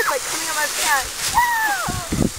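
Children's excited high-pitched shouts and squeals, one a long falling cry near the end, over the rustling scrape of a plastic sled being dragged across grass and dry leaves.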